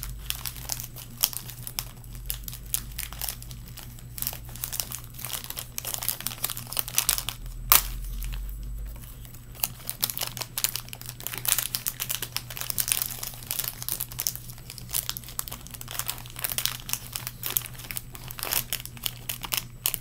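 Plastic snack pouch crinkling and crackling as it is handled and worked open, in irregular bursts, with one sharper crack about eight seconds in.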